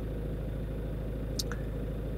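Volvo C30's engine idling steadily, a low even hum heard from inside the cabin. A faint click comes about one and a half seconds in.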